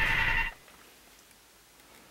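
A steady electronic tone that cuts off suddenly about half a second in, then near silence.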